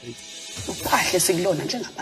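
Speech from a TV drama's dialogue over background music, with a high hiss through the first second or so.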